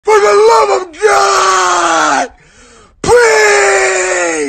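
A woman wailing and crying loudly in three long, drawn-out cries, each sliding down in pitch, with a short pause before the last one.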